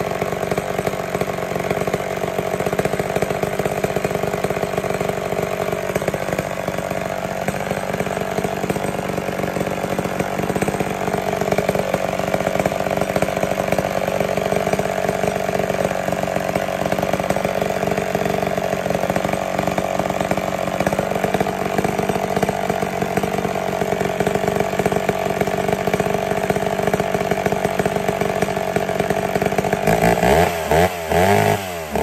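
Vintage McCulloch MAC 10-10 two-stroke chainsaw idling while the low-speed circuit of its carburetor is adjusted. The idle speed drops about six seconds in, comes back up briefly, drops again, and rises once more about two-thirds of the way through.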